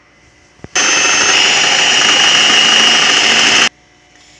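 An electric kitchen mixer's motor running at high speed for about three seconds, with a steady high whine, then cut off suddenly. A single click comes just before it starts.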